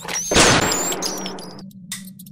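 A sudden loud crash that dies away over about a second, with a high thin ringing over it: a sound effect of a trap going off.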